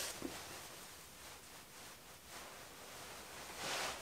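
Faint, soft rustling of a terry-cloth towel being patted against the face to dry the skin, over low room hiss.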